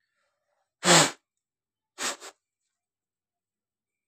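A person sneezing once, loudly, about a second in, followed a second later by a shorter, weaker double burst of breath.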